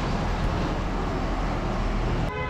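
Steady street traffic noise with a constant low rumble.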